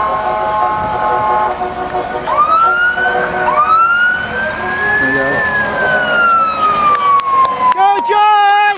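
Electronic wail siren on a pace car with a roof light bar. After a steady multi-note tone, it winds up twice, then rises slowly and falls away in one long wail.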